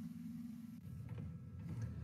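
Faint, steady low hum of background room tone, with no distinct event.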